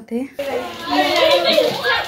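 A woman's voice briefly, then about half a second in several children shouting and squabbling at once in a small room, their voices overlapping in a loud scuffle.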